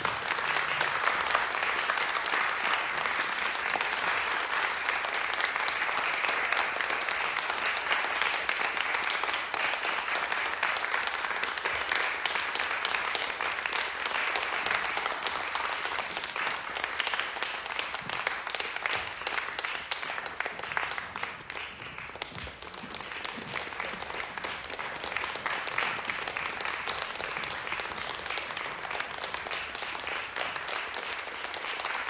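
Audience applauding steadily after a performance, with a brief dip a little past two-thirds of the way through before it picks up again.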